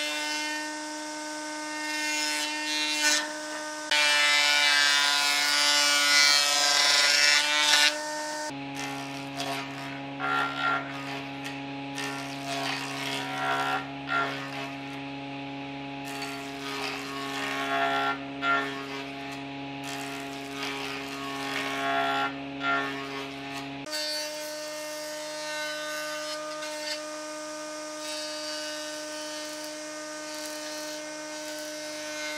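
Combination jointer-planer running with a steady motor and cutterhead hum while rough boards are fed through it; the cutting is loudest about four to eight seconds in. The hum changes pitch twice, with scattered knocks and rasps of wood on the machine between.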